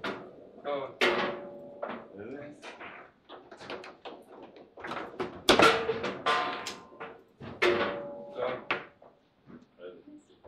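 Table football (foosball) play: a string of sharp clacks and thuds as the ball is struck by the rod figures and slammed against the table walls and into the goal, some hits ringing briefly. The loudest hits come about five and a half and seven and a half seconds in, as goals are scored.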